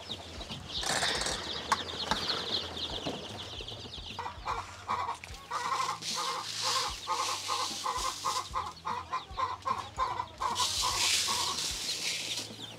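Chickens clucking in a steady run of short notes, about four a second. There is rustling near the start and again near the end as the foil brooder cover is handled and chick feed is poured from a bag.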